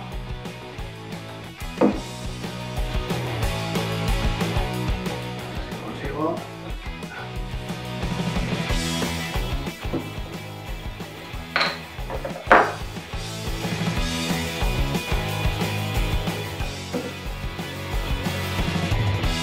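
Background music with a steady beat throughout. Over it come a few sharp clicks as the cap of a Guinness bottle is prised off with a bottle opener, the two loudest about a second apart two-thirds of the way in.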